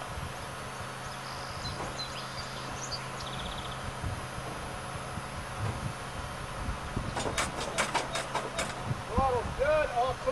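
A quick run of about nine sharp clicks, about six a second, near the end, followed by a few short rising-and-falling voice sounds, over a low steady hum.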